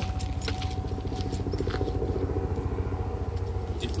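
2010 Chevrolet Camaro idling, a low, steady, evenly pulsing engine rumble, with a few light taps scattered over it.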